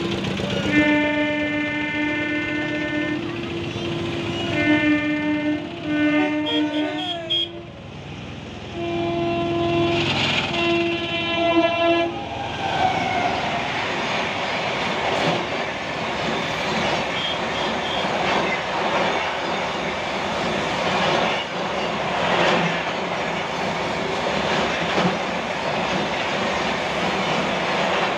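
A train horn blows a series of long two-tone blasts over the first twelve seconds or so. Then a Rajdhani Express runs across the railway bridge overhead: a steady, loud rush of wheels on rail with repeated clicks over the rail joints.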